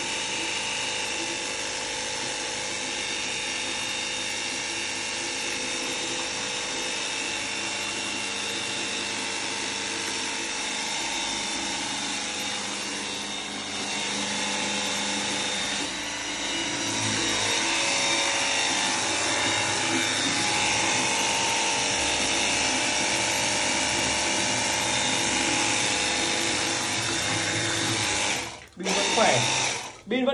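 Cordless battery-powered pressure washer running steadily, its motor and pump whining as the water jet hisses into a plastic bucket. It gets somewhat louder about halfway through and cuts out briefly near the end before starting again.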